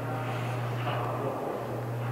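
A steady low hum with a faint hiss above it.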